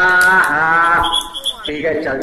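A man's voice calling out in long, drawn-out syllables. About a second in comes a brief high trilling tone.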